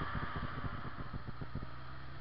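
Suzuki GS1100E's air-cooled inline-four engine running on the move, heard with wind noise on the bike-mounted microphone. A rapid low throbbing settles into a steady low hum about one and a half seconds in.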